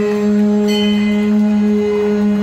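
Devotional bhajan music: a harmonium holds one long, steady note, with brighter overtones joining under a second in.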